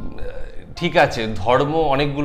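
A man talking, with faint background music.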